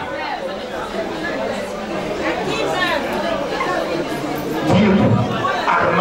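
Overlapping chatter of many voices in a large hall, with no one voice clear. It gets a little louder about five seconds in.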